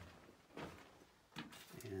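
Faint scuffs and a sharp knock about 1.4 s in from a person moving on foot through a rocky mine tunnel.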